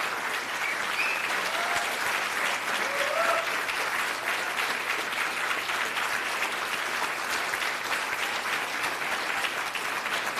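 Audience applauding steadily, with a few faint voices or cheers in the first few seconds.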